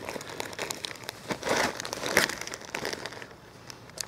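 Clear plastic Opsak odor-proof food bag crinkling and rustling as it is handled inside a fabric Ursack, a run of irregular crackles that thins out over the last second.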